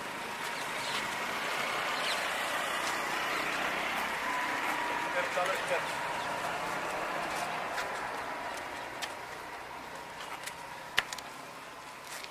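Road traffic noise from a passing motor vehicle, swelling over the first couple of seconds and slowly fading, with faint voices and a sharp click near the end.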